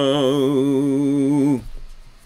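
A man chanting a Hebrew prayer, holding one long note with a wavering pitch that breaks off about one and a half seconds in.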